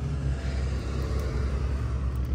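A steady low rumble with no distinct knocks or clicks.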